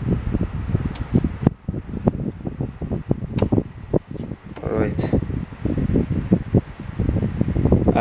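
Short clicks and knocks of hands working the last mounting bolt loose and freeing a 3D printer's motherboard from its metal frame. They run over a steady low rumble.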